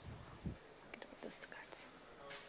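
Faint whispered speech picked up by a podium microphone, with a few soft hissing consonants, after a low thump about half a second in.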